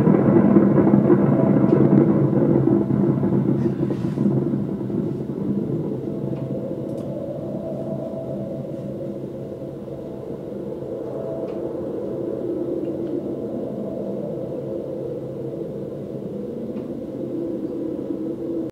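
Nuclear-explosion sound effect: a long, deep rumble, loudest in the first few seconds, then easing to a steady lower rumble as the mushroom cloud rises.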